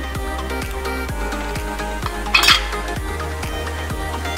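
Background music with a steady beat. About two and a half seconds in there is a single short, bright clink.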